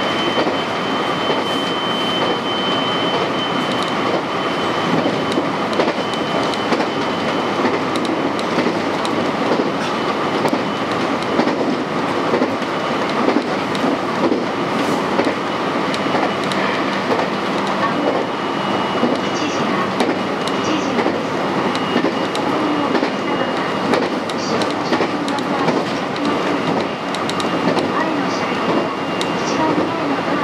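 JR West 223 series electric train running at speed, heard from the driver's cab: a steady rumble of wheels on rail with scattered clicks from the track. A thin, high, steady whine sits over it for much of the time.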